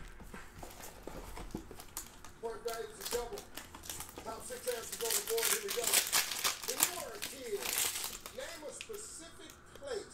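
Clear plastic shrink wrap crinkling and crackling as it is torn and pulled off a sealed trading-card box, with faint voices in the background.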